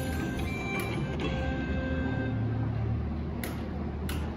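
Video slot machine playing electronic tones and a jingle as its free-spin bonus round ends on the congratulations screen, with a few sharp clicks along the way.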